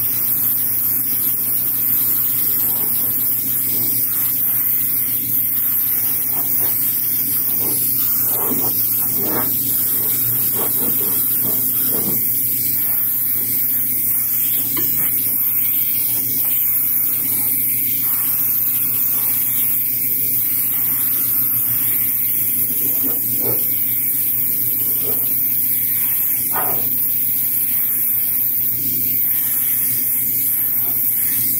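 Airbrush spraying a translucent red coat of paint, a continuous hiss of air at an even level, with a low steady hum beneath.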